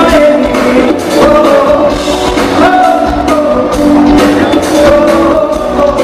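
Live band with a woman singing lead: held, sliding vocal lines over electric guitar, bass guitar, drum kit and congas, played in an afropop style.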